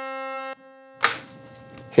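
A handheld canned air horn blows one steady, held note that cuts off suddenly about half a second in. A brief noise follows about a second in.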